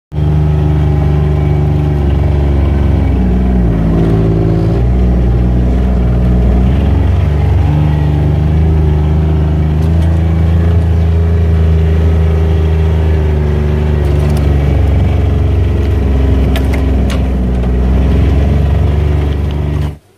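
Off-road utility vehicle's engine running under load, heard from inside the cab, its pitch dipping and then rising again about three to five seconds in. A few sharp knocks sound near the middle and toward the end.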